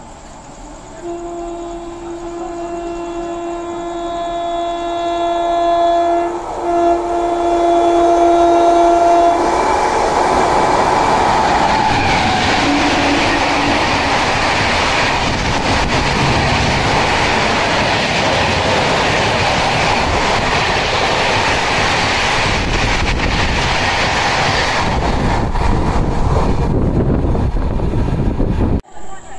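Indian Railways WAP-7 electric locomotive on an express at about 130 km/h. Its horn sounds a long steady blast from about a second in, broken once briefly, growing louder as the train approaches. From about ten seconds in comes the loud steady rush of the locomotive and coaches passing at speed, which eases off near the end.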